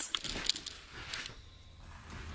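A few faint clicks and rustles of handling in the first half second as the handheld camera is swung around, then quiet room tone.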